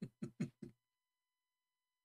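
Tail end of a man's laughter: about four short, fading laugh pulses in the first moment, then dead silence.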